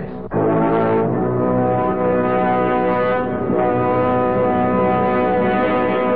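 Brass fanfare of a radio serial's theme music, playing long held chords that change pitch about a second in and again past the middle.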